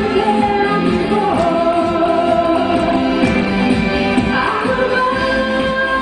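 A woman singing into a handheld microphone over musical accompaniment, holding long notes.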